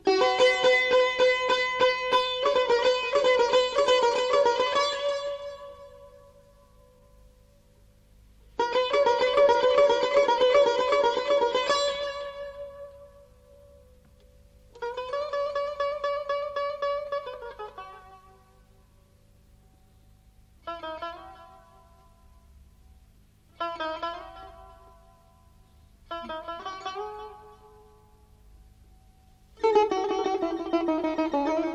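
Solo Persian plucked lute playing in dastgah Mahour: phrases of rapidly repeated plucked notes, separated by pauses of a few seconds, the later phrases shorter.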